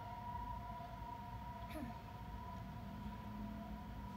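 A steady high whine of two held tones over a low background rumble, with a brief faint voice a little under two seconds in.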